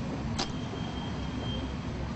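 Steady background rumble and hiss of a noisy place, with one sharp click about half a second in and a faint, thin high tone held for about a second after it.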